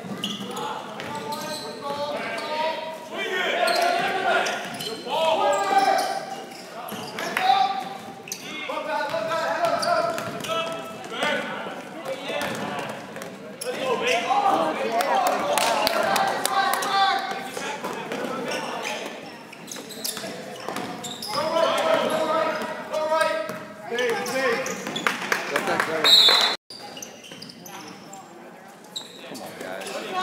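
Basketball dribbled and bouncing on a hardwood gym court during live play, with voices in the background, echoing in a large hall.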